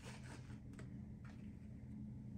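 A few faint light clicks from a plastic dressing cup and fork being handled, over a steady low hum.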